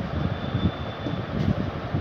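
Marker pen writing on a whiteboard: scratchy strokes and light knocks of the board over a steady rumbling background noise, with a faint thin squeak in the first second.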